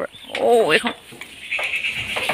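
A single wavering call from a farm animal, about half a second long, shortly after the start.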